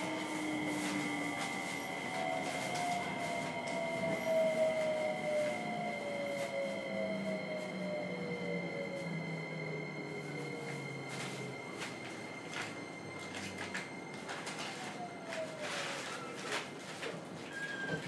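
Hitachi IGBT VVVF inverter and traction motors of a JR Kyushu 303 series motor car, heard from inside the car, whining and falling steadily in pitch as the train decelerates under braking, over wheel and running noise that slowly quietens. A second falling whine comes near the end, with a scattering of short clicks and squeaks as the train slows.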